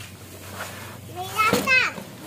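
A young child's short vocal exclamation near the end, with one sharp knock in the middle of it.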